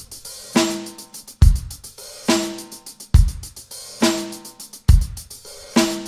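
Drum kit playing a slow beat with no other instruments: bass drum and snare alternate a little under a second apart, with a hi-hat ticking quickly in between.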